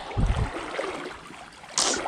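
Shallow river water running and sloshing, as a wader stands in the stream. A low thump comes a moment in, and a brief sharp hiss shortly before the end.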